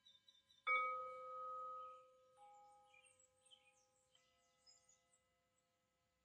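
A struck bell-like chime rings out about a second in and slowly fades. Two softer tones of different pitch follow, a little over a second apart.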